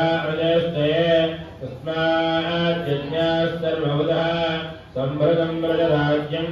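Male chanting of Sanskrit Vedic mantras on steady held notes, in long phrases with short breath pauses about two seconds in and again near five seconds.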